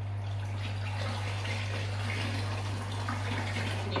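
Water from an aquarium siphon hose running steadily into a plastic bucket. The siphon has started and is flowing.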